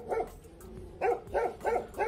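A dog barking: a short bark at the start, then four quick barks in the second half.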